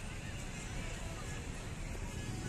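Steady low rumble of a tour bus and cars moving slowly past, with people talking in the background.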